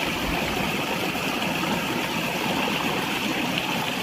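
Water running steadily in a field ditch, a continuous even rush without a break.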